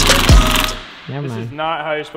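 Background music with a beat and deep bass hits that slide down in pitch, cutting off a little under a second in; then a man's voice begins talking.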